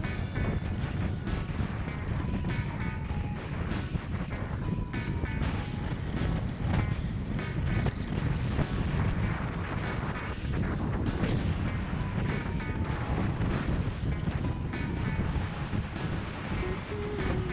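Background music with a steady beat, over low wind rumble on the microphone of a moving bicycle.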